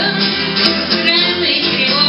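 Live rock song: a woman singing over her own strummed electric guitar, played loud through the PA.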